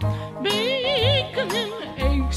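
A woman's singing voice holding two long notes with a wide, wobbling vibrato, over a small band backing with bass notes underneath, in a novelty lounge-pop recording.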